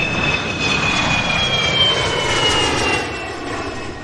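Jet airliner flying past: the engine noise swells and then fades near the end, with a high whine that glides slowly downward as it passes.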